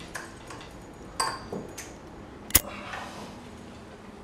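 A few light knocks and a short ringing clink of objects handled on a bedside table, then one sharp click about two and a half seconds in, the loudest sound: a table lamp being switched off.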